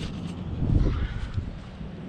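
Wind buffeting the microphone as a low rumble, swelling around the middle, with footsteps on grass as a person walks up.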